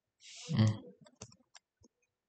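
A man's short 'mm', hummed with a breath just before it, then a few light, sharp clicks of a stylus pen tapping on a touchscreen as it is being tested.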